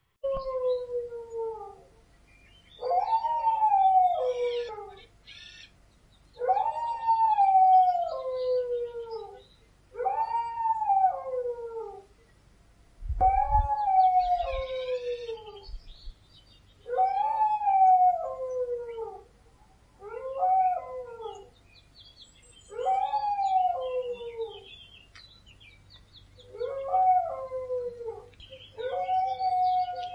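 Two canines howling together in a run of long howls, one about every three to four seconds. Each howl rises briefly, then slides down in pitch, and the two voices overlap at different pitches. A brief low thump comes about halfway through.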